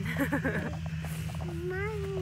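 A woman laughs. About a second and a half in, a small child gives one drawn-out high call that rises and then holds steady. A steady low hum runs underneath.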